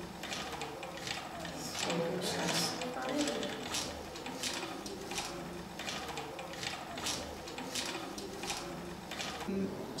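Wooden treadle spinning wheel turning as wool is spun, clicking in a steady rhythm about one and a half times a second, with low voices under it.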